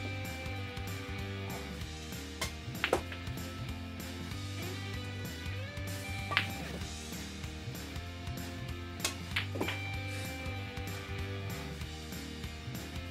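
Steady background music, with a few sharp clicks of pool cue and balls striking each other: a pair near three seconds in, one about six seconds in, and another pair near nine seconds.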